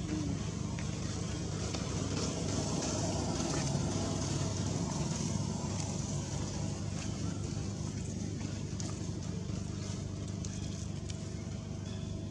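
Steady low hum, like a running motor, under a constant haze of outdoor background noise.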